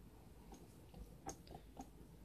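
A handful of faint, irregular metallic clicks from an XY table's handwheel and slide being cranked by hand, on an axis whose gib the owner thinks is probably too loose.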